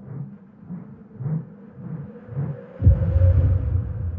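Intro logo sound design: soft, low pulses, a little under two a second, over a faint steady hum. About three seconds in, a deep rumbling boom comes in and carries on past the end.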